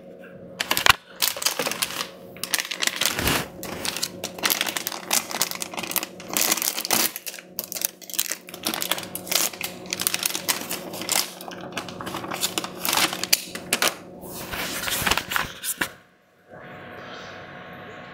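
Handling noise of a hard drive being unwrapped and mounted: quick rapid clicks, clatter and crinkling of an anti-static bag, stopping shortly before the end. A steady low hum runs underneath.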